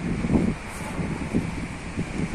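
Wind buffeting the microphone in uneven gusts, a low rumbling noise.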